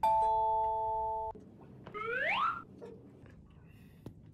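A comic chime sound effect: a bell-like ding of a few steady tones that starts suddenly and holds for just over a second. About two seconds in comes a short, rising, whistle-like glide.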